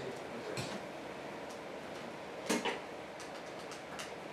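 A few soft clicks and knocks of handling in a pause between songs, over a low room background; the loudest is a quick double knock about two and a half seconds in, with lighter ticks near the end.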